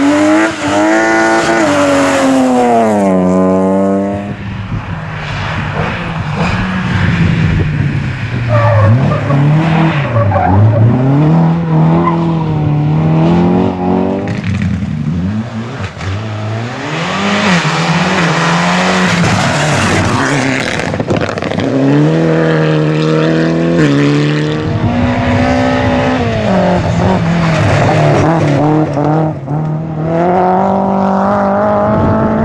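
Rally car engines revving hard in turn as several cars drive fast over a loose gravel stage: the BMW M3 E36 and a Mitsubishi Lancer Evo. The revs repeatedly climb and drop with gear changes and lifts off the throttle, and tyres scrabble on the gravel.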